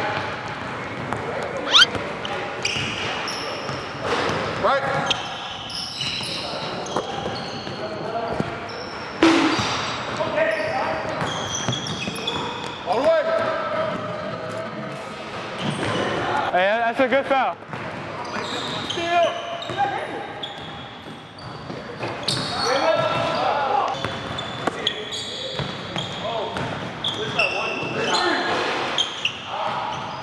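Basketballs bouncing on a hardwood gym floor during a pickup game, with indistinct players' voices calling out over them. The big hall echoes, and there are two sharper bangs, about two seconds in and about nine seconds in.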